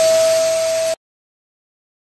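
Electric balloon pump running, a steady whine over a hiss of air as it fills a large balloon, cutting off suddenly about a second in.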